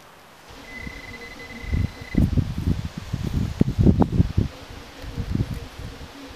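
Hand digger cutting and prying through grass turf and soil, an irregular run of dull thumps and scrapes with a few sharper knocks. Near the start comes a steady high electronic beep lasting about a second and a half.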